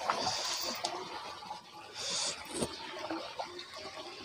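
Water sloshing and splashing faintly around a plastic tub of koi held in pond water, with two brief louder splashes about half a second in and about two seconds in.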